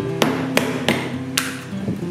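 A metal hand blade strikes a bamboo cane in four sharp knocks within about a second and a half, over background acoustic guitar music.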